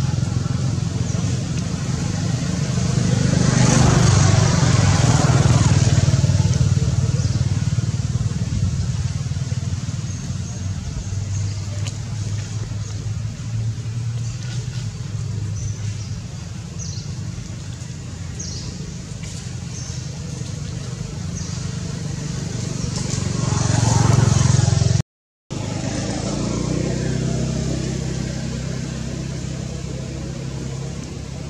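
Road traffic: motor vehicles passing with a steady low rumble, swelling up and fading away about four seconds in and again shortly before a brief dropout in the sound.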